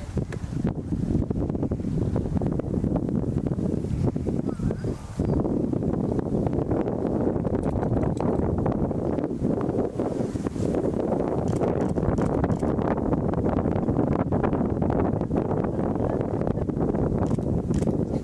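Wind buffeting the microphone, heavier from about five seconds in, over the hoofbeats of a carriage-driving team of horses moving through the cones on a sand arena.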